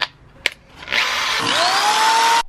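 A corded electric drill drilling a hole through an iron pipe fitting: after a sharp click, the drill starts about a second in with a rising whine as the motor spins up.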